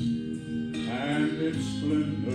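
Southern gospel music with guitar accompaniment and a man's voice singing a slow song.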